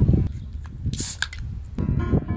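Wind buffeting the microphone, with a few sharp clicks and a short hiss about a second in: a beer can being cracked open. Piano music comes in near the end.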